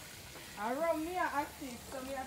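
A voice speaking or calling briefly in the middle, quieter than the nearby talk around it, over a faint steady hiss.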